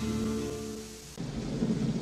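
A held chord of promo music fades out. About a second in, the sound cuts to a film soundtrack of steady rain with a low thunder rumble.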